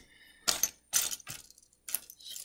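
Loose plastic LEGO bricks clattering and clicking against one another as a hand rummages through a pile of them, in about four short bursts.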